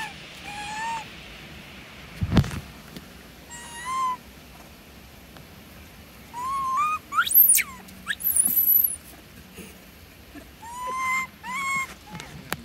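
Young long-tailed macaques giving short, rising coo calls, one after another. About seven and a half seconds in comes a sharp scream that shoots up high, followed by a thin squeal. A single thump sounds about two seconds in.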